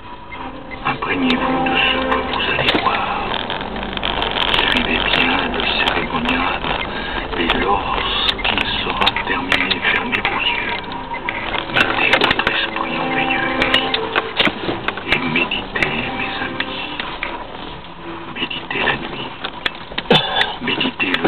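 Indistinct voices talking throughout, over the steady running noise of a moving vehicle.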